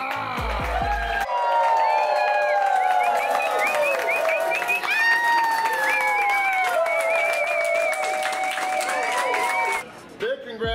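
A crowd clapping and cheering over music. There are a few low thumps in the first second.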